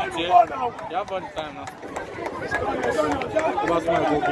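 Spectators' chatter: several voices talking over one another close to the microphone.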